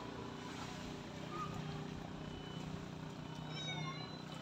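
A steady low hum, with a short high-pitched animal call near the end.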